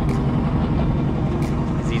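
Boat engine running steadily, a low even hum.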